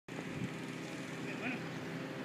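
Faint, distant voices over a steady outdoor background hiss, with a couple of short high glides about one and a half seconds in.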